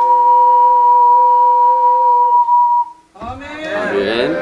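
Ocarina duet holding its final note, two steady pitches an octave apart, which end one after the other between about two and a half and three seconds in. After a brief gap, audience voices break out in the last second.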